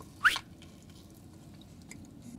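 Mouth noise from biting and chewing a burger slider: one short squeak that rises in pitch about a quarter second in, then quiet chewing.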